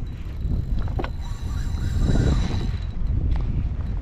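Wind buffeting the camera microphone as a steady low rumble, with a couple of light clicks, one about a second in and one near the end.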